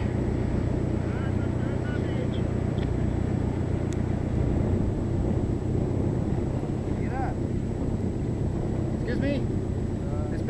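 Steady low hum of the UC3 Nautilus submarine's engine running as the boat manoeuvres on the surface, with faint voices now and then.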